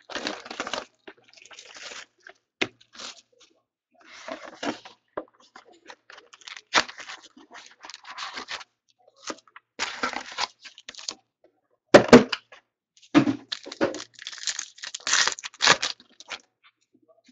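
A sealed Panini Contenders trading-card box opened by hand: cardboard and wrapping torn and rustled in irregular bursts as the lid comes off and the card packs are pulled out and stacked. A sharp knock about twelve seconds in.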